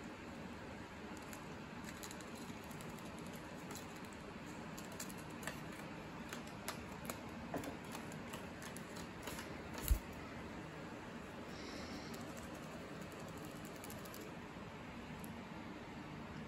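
Light, irregular taps and clicks of a Java sparrow's beak and feet on a wooden table and a paper origami crane, over a steady faint hiss, with one sharper knock about ten seconds in.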